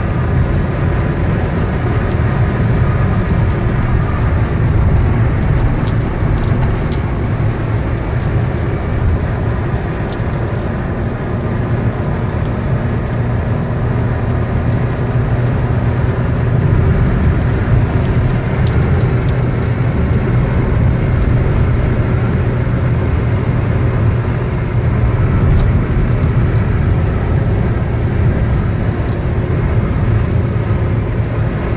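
Steady road and engine noise heard from inside a car cruising at motorway speed: an even, low rumble with tyre roar. Light high clicks from inside the cabin sound now and then.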